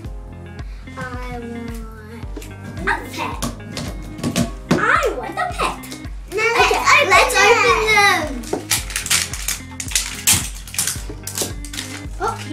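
Background music with a steady beat, under young children's voices.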